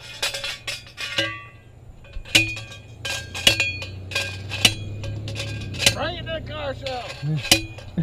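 Metal sign pole being worked down into the ground: about a dozen sharp metallic clanks, irregularly spaced, each with a short ring, over a steady low hum.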